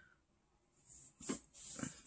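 Faint breath and mouth sounds from a person, a little over a second in and again near the end.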